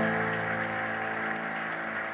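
Applause over the last held notes of a song, which slowly fade away.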